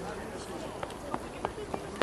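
Quick, regular footsteps, about three a second, starting about a second in and growing louder toward the end over a faint outdoor background.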